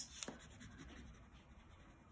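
Faint scratching of a blue wax crayon coloring over paper in short strokes.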